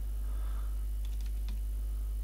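Computer keyboard typing: a quick run of a few keystrokes about a second in, over a steady low electrical hum.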